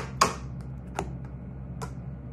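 Tarot card deck knocked and set down on a wooden tabletop as it is cut into piles: four sharp taps, the loudest about a quarter second in, the others about one second in and near the end.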